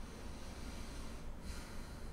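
Quiet room tone with a steady low hum, and a short breath sound about one and a half seconds in.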